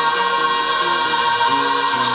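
A male rock vocalist holds one long sung note over acoustic guitar and bass guitar, played live through a PA.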